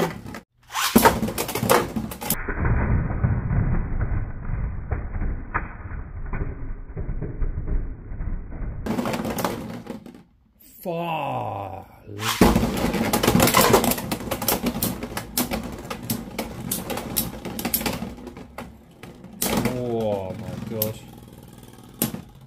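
Beyblade X spinning tops in a plastic Beystadium: a steadier spinning rumble in the first half, then, after the battle ends, a long run of quick plastic clicks and clacks as the tops are handled and relaunched into the stadium near the end.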